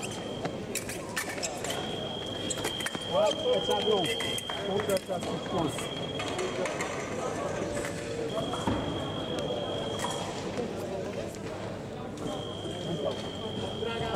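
Electric fencing scoring machine sounding a steady high beep, the longest starting about two seconds in and lasting some five seconds as a touch is scored, with shorter beeps later. Sharp clicks of blades and feet on the piste, and loud voices about three to five seconds in.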